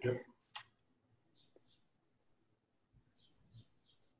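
A sharp click about half a second in, then a few faint, soft clicks later on: computer mouse clicking while screen sharing is set up.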